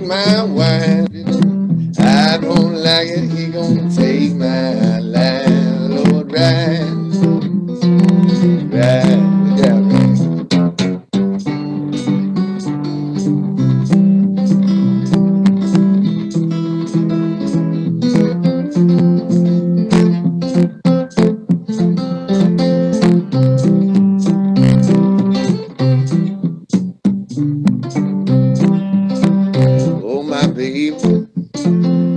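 Solo blues on an archtop acoustic guitar, fingerpicked: a steady repeating bass note under picked treble lines.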